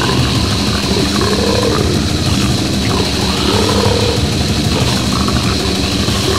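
Deathgrind recording playing at full intensity: heavily distorted guitars and bass with fast drums in a dense wall of sound, and deep guttural vocals that rise and fall in pitch.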